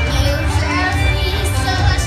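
A girl singing into a microphone over a backing track with a strong, steady bass.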